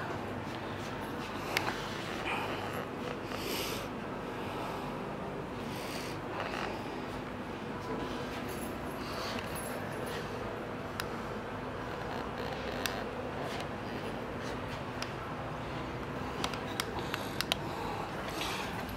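Steady indoor room noise with a faint ventilation-like hum, broken by a few small scattered clicks and rustles of handling and movement.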